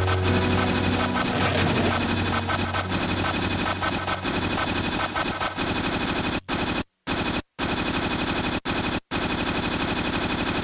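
Dense, rapid crackling and rattling of harsh distorted electronic noise, with a steady low musical tone under it for the first couple of seconds. In the second half it cuts out briefly several times.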